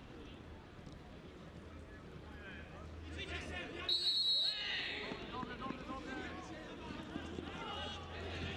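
Referee's whistle blown once, a short high blast of about half a second, about four seconds in. A man's voice is talking around it.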